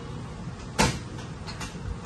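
A sharp knock about a second in, followed by a few lighter clicks, over a steady low hum: something being handled on a workbench.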